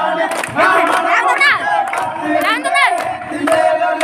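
Group of dancers singing and shouting a kummi folk-dance song, with high rising-and-falling calls twice and sharp hand claps on a steady beat.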